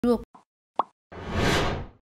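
Sound effects for an animated logo intro: a short pitched blip at the start, a single pop just under a second in, then a whoosh that swells and fades over the last second.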